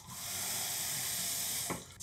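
Bathroom sink faucet running in a steady stream as a toothbrush is rinsed under it. The flow stops near the end, just after a short knock.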